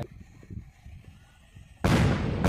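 Faint low rumble, then near the end a sudden loud explosion-like hit whose high part fades away: an edited-in outro sound effect.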